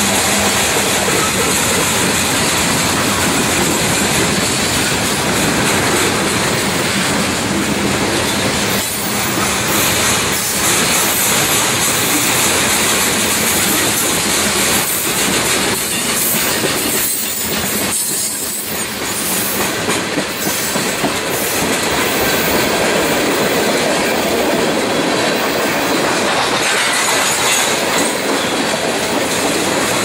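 Freight cars rolling past close by: a loud, steady rumble of steel wheels on the rails, with clickety-clack as the wheels cross rail joints.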